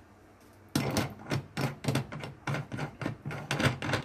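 Steel carriage bolt being screwed by hand into the threaded die station of a reloading press, metal threads grating. It starts about a second in as a quick, irregular run of clicks and rasps, about three or four a second.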